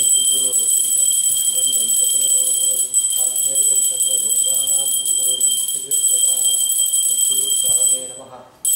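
Pooja hand bell rung continuously, a steady high ringing, over a man chanting in phrases; both stop together at the very end.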